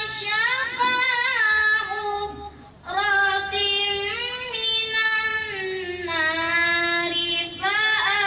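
A single high voice singing unaccompanied in long, drawn-out, ornamented notes, with a brief breath pause about a third of the way in.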